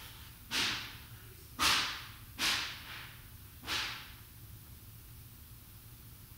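Four short swishes, roughly a second apart, each starting sharply and dying away within a fraction of a second.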